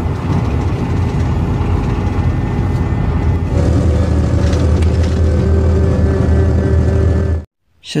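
Steady low rumble of a moving vehicle heard from inside its cabin, with a constant hum that settles in about halfway through. It cuts off suddenly shortly before the end.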